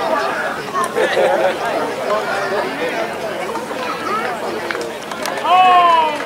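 Indistinct shouting and calling of voices around a rugby scrum, with a loud, drawn-out shouted call near the end.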